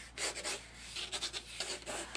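A pencil scratching across watercolor paper in a run of short strokes as an outline is sketched.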